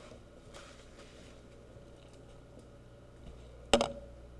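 Faint steady hum with a few soft handling noises, then one sharp click near the end, where the paused camcorder recording cuts back in.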